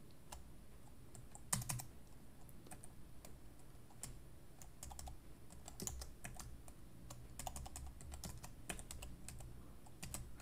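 Computer keyboard being typed on: faint, irregular key clicks as code is edited, with a louder cluster of keystrokes about one and a half seconds in.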